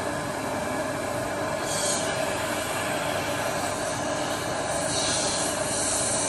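A steady mechanical drone with a constant mid-pitched tone running under it, with brief hissing swells about two seconds in and again about five seconds in.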